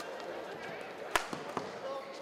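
A badminton racket strikes the shuttlecock once, a sharp crack about a second in, with a couple of fainter taps after it, over the steady murmur of an arena crowd.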